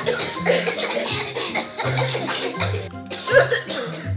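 Several children fake-coughing in turn, putting on illness, over background music with a low bass line that steps from note to note.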